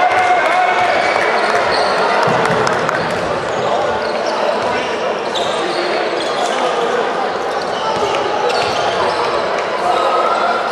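Basketball game sound in a large hall: a ball bouncing on the hardwood court, short high squeaks, and a steady mix of crowd and player voices.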